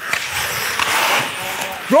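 Ice skates scraping and gliding on the rink ice: a steady, fairly loud scraping hiss, with a voice calling out right at the end.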